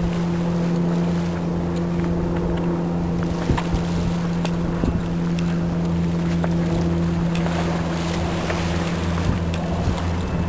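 A marine engine running with a steady low hum that holds one pitch throughout, over a noisy background of wind and water with faint scattered clicks.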